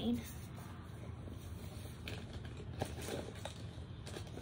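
Low steady room hum with a few faint taps about two to three and a half seconds in, after the end of a spoken word at the very start.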